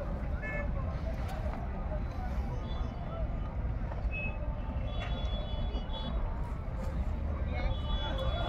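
Steady low rumble with faint, indistinct voices in the background and a few short high tones.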